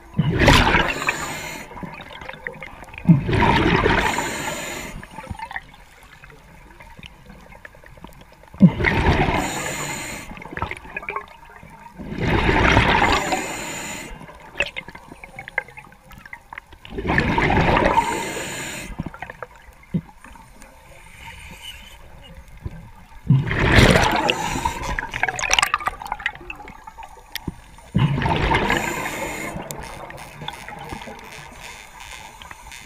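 Scuba regulator exhaust: a diver's exhaled breath bubbling out close to an underwater camera, in rushing bursts of one to two seconds that recur about every four to five seconds, with quieter gaps between.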